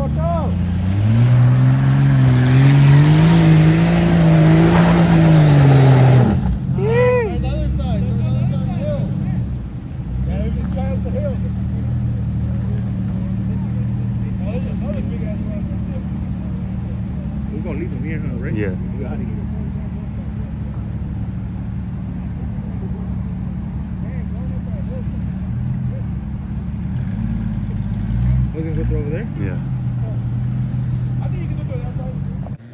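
Jeep SUV engine revving hard as it climbs a dirt hill, the pitch rising, held and falling over about six seconds under a loud rush of tyre-on-dirt noise, then dropping back abruptly to a steady low-rev running.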